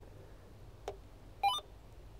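A Uniden UM380 marine VHF radio being switched on. There is a single click from its power/volume knob, then about half a second later a brief start-up beep: a quick run of electronic tones stepping up in pitch as the radio powers up.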